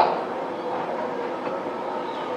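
Steady background noise picked up by a podium microphone in a pause between spoken phrases: an even hiss with a faint hum and no speech.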